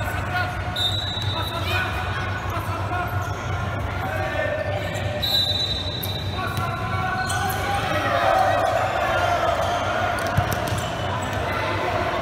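Futsal ball being kicked and bouncing on a hard indoor court, with players and spectators shouting, echoing in a large hall.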